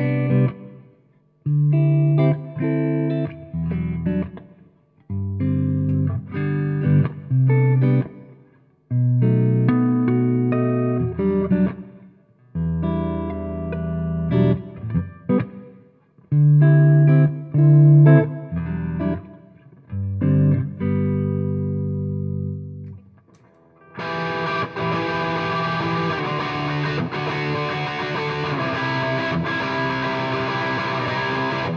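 Fender JA-90 Thinline Telecaster electric guitar (semi-hollow ash body, Seymour Duncan soapbar pickups) played through an amp: stop-start riff phrases with short gaps between them. About 24 seconds in it changes to a continuous, brighter and denser passage.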